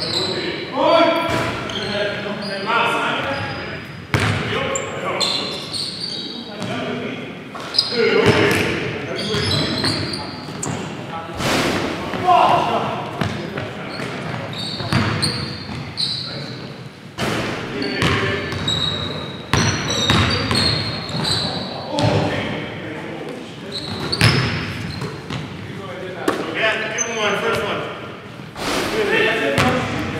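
Basketball being dribbled and bouncing on a hardwood gym floor, with sneakers squeaking and players calling out, all echoing in a large gym.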